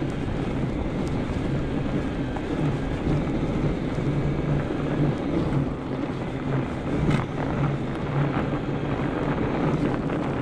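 Fat-tire e-bike riding on snow on studded 45North tires, with wind buffeting the microphone over a steady low hum from the bike.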